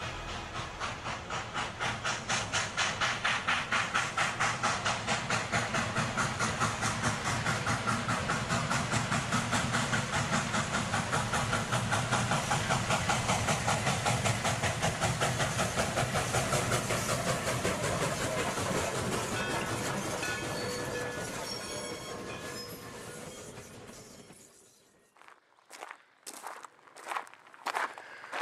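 A train running on rails, its wheels clicking over the rail joints in a steady rhythm of about three beats a second, fading out near the end. A few short knocks follow just before the end.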